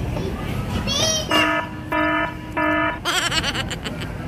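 Three short, identical electronic beeps, evenly spaced about half a second apart, each one steady flat tone. Just before and just after them come high, wavering squeals from a child's voice.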